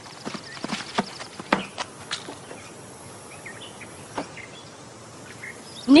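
Light scattered knocks and taps, cartoon foley of children climbing onto wooden picnic benches and settling at the table, over a faint outdoor ambience with a few small chirps.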